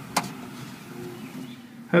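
A single sharp click, then a faint, low background hum.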